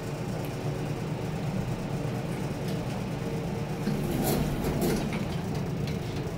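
Vintage Haughton traction elevator car travelling with a steady low hum. About four seconds in it turns rougher and noisier as the car arrives and the doors open.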